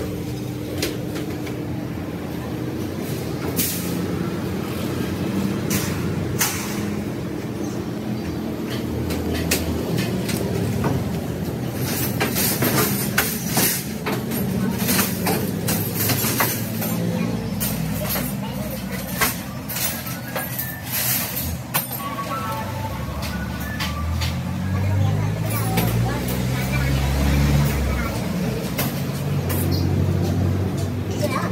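Cut sheet-steel panels and pieces clanking, rattling and scraping against the steel slats of a CNC plasma cutting table as they are lifted off. There are repeated sharp metal clicks and knocks, densest in the middle, over a steady low hum.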